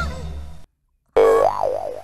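Cartoon 'boing' sound effect: a springy tone that wobbles up and down in pitch, starting suddenly about a second in after a short silence and fading away. Before it, a louder sound dies away in the first half second.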